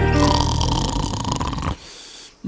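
A long, rough throat noise from a person, starting as the music stops and running for about a second and a half before it cuts off.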